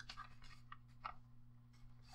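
Faint rustling and light ticks of printer paper being handled and folded over, over a low steady hum.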